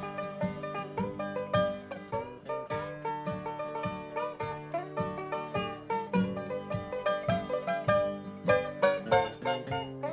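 Five-string banjo playing an instrumental break in a bluegrass song, fast rolling picked notes, with acoustic guitar keeping rhythm underneath.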